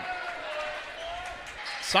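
Basketball being dribbled on a hardwood gym floor under a low murmur from the crowd in the stands.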